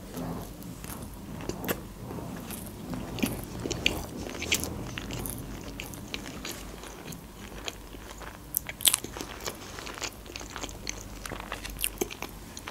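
Close-up chewing of a sushi roll coated in green fish roe, with irregular small crunchy clicks throughout.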